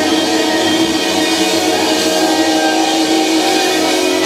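Live symphonic metal band playing loud, a sustained passage of held chords with electric guitars, in a small club.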